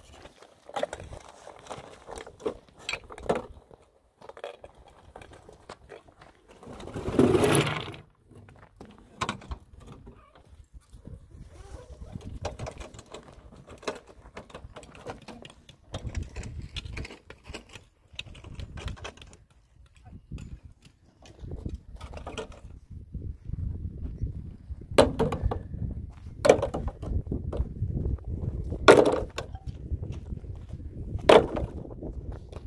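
Stones knocking and scraping as they are handled on rocky ground and dropped into a metal wheelbarrow, with scattered small knocks throughout, a longer rattling noise about seven seconds in, and several loud sharp knocks near the end as stones land in the pan.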